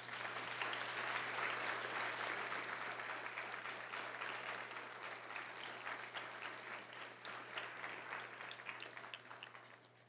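Audience applauding, loudest at the start and slowly dying away over about ten seconds.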